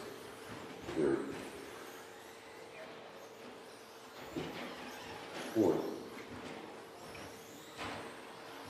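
2WD electric short-course RC trucks with 13.5-turn brushless motors running around an indoor track: a faint, steady whir of motors and tyres under the hall's ambience, with a constant low hum.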